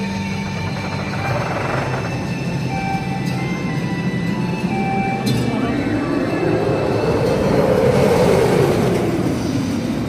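Themed background music playing while a roller coaster train, Nemesis Inferno, rushes past. From about six seconds in, its roar rises to a peak near eight seconds and then falls away.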